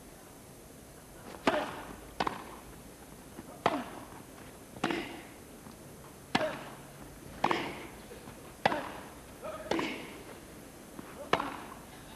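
Tennis rackets striking the ball in a rally on a grass court: a serve about one and a half seconds in, then about eight more sharp hits spaced a second or so apart, each dying away quickly.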